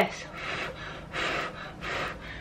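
A woman breathing out heavily in three short, breathy puffs, the middle one the loudest.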